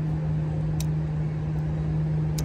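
A steady low mechanical hum with one constant droning tone, and a faint click just under a second in.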